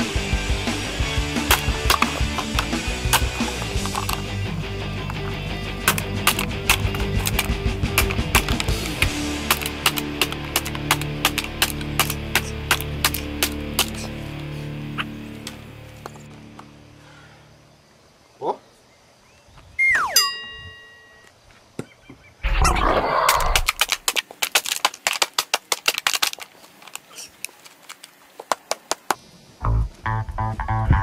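Background music with a steady drum beat that fades out about halfway through. After it, a few separate short sounds follow, among them a sliding whistle-like tone and a loud noisy stretch of a few seconds, then a quick run of clicks.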